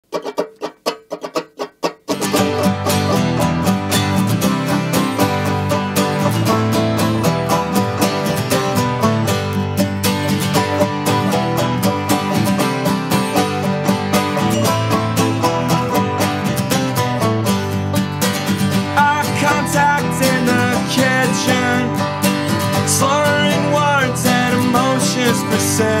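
Instrumental intro of a band's live studio recording, led by plucked guitar with a steady bass underneath. It opens with about two seconds of sparse, quieter repeated notes before the full band comes in.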